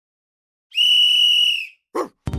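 Logo sting: a single high, steady whistle note held for about a second, then fading, followed near the end by a short sound that drops sharply in pitch.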